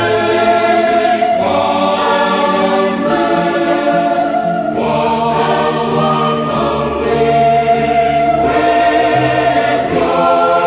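Male and female voices singing a hymn together, holding long notes that change about every second or so.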